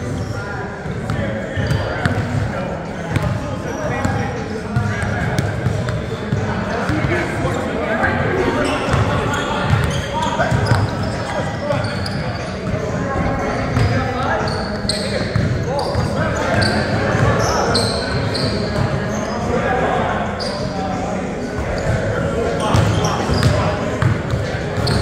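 Game sounds of indoor pickup basketball on a hardwood gym floor, echoing in a large hall: a basketball bouncing, players' indistinct shouts and chatter, and sneakers squeaking. The short high squeaks come thick and fast in the second half.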